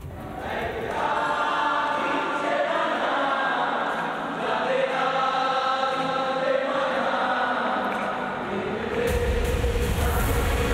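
A group of people singing together, holding long notes. About nine seconds in, a music bed with a deep bass comes in.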